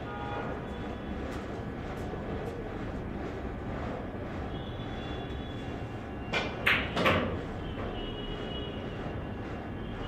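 Steady room noise of a billiard hall, with a short, loud clatter of a few sudden knocks about six and a half seconds in.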